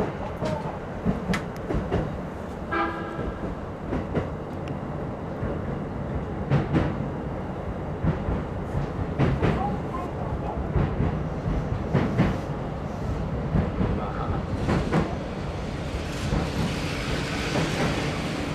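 E233 series commuter train running at low speed, a steady rumble with irregular clicks of the wheels passing over rail joints. Near the end a higher hiss rises as the train comes in along the platform.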